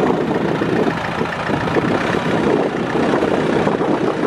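Kubota L4310 compact tractor's four-cylinder diesel engine running steadily as the tractor moves off slowly.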